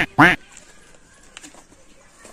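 Two short, loud, quack-like calls in quick succession right at the start, each rising and then falling in pitch, followed by a quiet yard with a few faint ticks.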